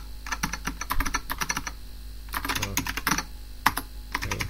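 Computer keyboard typing: two quick runs of keystrokes with a short pause between, then one sharp single keystroke near the end.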